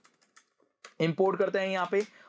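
A few faint keystrokes on a computer keyboard, then a man talking from about a second in.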